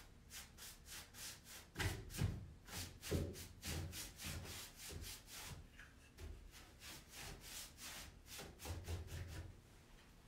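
Paintbrush scrubbing paint onto a wooden wardrobe in quick back-and-forth strokes, about four a second, with a few dull knocks in between.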